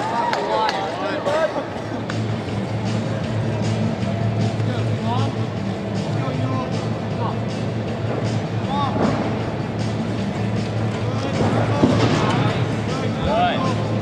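Busy sports-arena ambience: distant voices and crowd chatter with background music over a steady low hum, and scattered small clicks and knocks.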